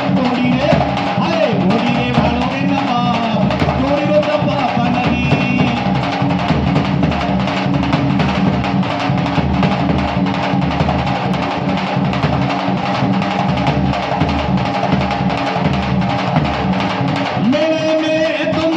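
Rajasthani folk music for Kalbeliya dance: a large drum beats a fast, steady rhythm under a held, droning melody. A voice sings over it in the first few seconds.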